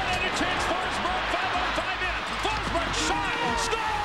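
Basketball game audio: crowd noise in an arena with many short squeaks, like sneakers on a hardwood court, and a held tone near the end.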